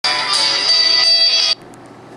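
A Nokia mobile phone's ringtone preview playing through its small built-in speaker as the tone list is browsed: a bright musical phrase that cuts off suddenly about a second and a half in, when the selection moves on.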